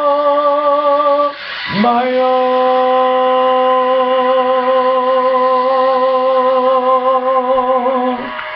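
A man's unaccompanied singing voice holding the song's long final note with a steady vibrato. About a second and a half in, the first held note breaks off; after a quick breath he scoops up into a slightly lower note and sustains it for about six seconds.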